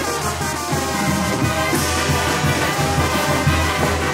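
Live Oaxacan-style brass band (banda) of trumpets, trombones, sousaphone, snare and bass drum and cymbal playing a lively dance tune with a steady bass beat.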